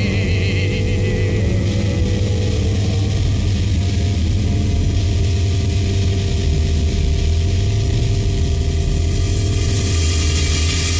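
A steady, loud, low engine-like drone used as a sound effect within a rock recording, with a few long held tones above it.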